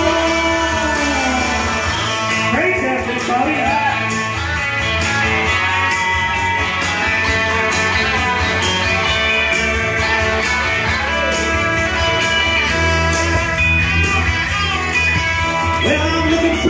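Live music led by an electric guitar played through a small amp, in a mostly instrumental passage with little or no singing.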